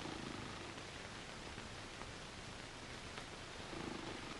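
Faint, steady hiss of an old film soundtrack with a few faint clicks, and a low hum that swells briefly at the start and again near the end; no music or speech.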